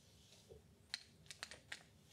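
Faint clicks of small board-game pieces, money tokens and goods cubes, being picked up and set down on the table: five or six light ticks, otherwise near silence.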